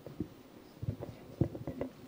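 Handling noise from a handheld microphone: a few soft, short low thumps and rustles, scattered irregularly.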